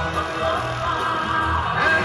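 Live rock and roll band playing an instrumental passage with a steady beat.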